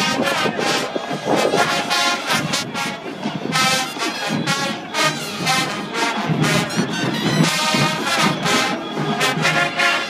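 Marching band playing, with the brass section loud in short, punchy phrases.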